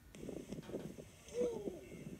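Faint, muffled voices in the soundtrack of a safari video playing through laptop speakers, with a short exclamation about a second and a half in.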